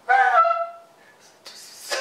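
A man imitating animal sounds with his voice: a pitched call with a falling then held note lasting just under a second, then a short hissing sound that swells near the end.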